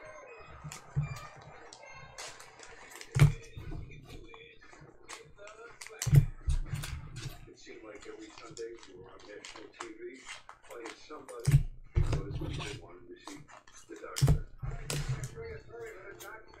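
Trading cards and packs being handled on a tabletop. A series of small clicks and taps, with a few louder knocks about 3, 6, 11 and 14 seconds in.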